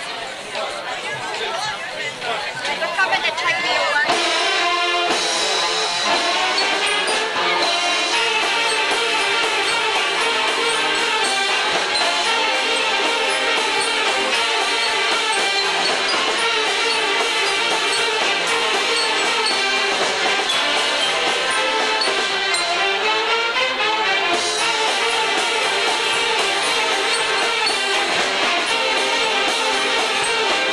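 Crowd chatter, then about four seconds in a Mummers string band strikes up a ragtime number, with saxophones, accordions, banjos and bass fiddle playing together, loud and steady.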